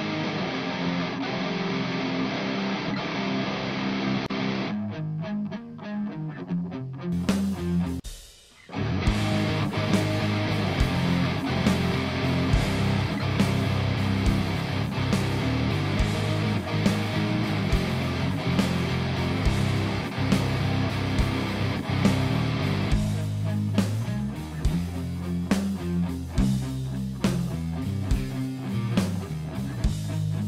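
Playback of a pop-punk demo mix built on electric guitars recorded through a Two Notes Captor X loadbox. The guitars play at first with their highs cut off, then after a brief drop about eight seconds in, the full band comes in with regular sharp drum hits.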